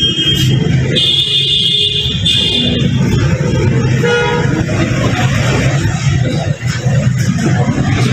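High horn-like toots over a steady low background din: one carries over from just before the start, a longer one runs from about a second in for nearly two seconds, and a shorter, lower one comes near the middle.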